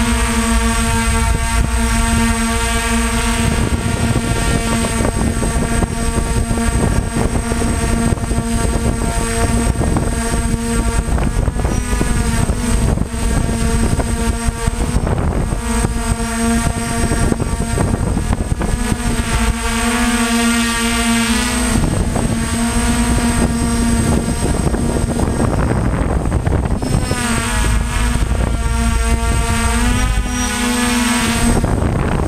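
DJI F550 hexacopter's six electric motors and propellers whining close to the on-board microphone, the pitch sweeping up and down several times as the throttle changes.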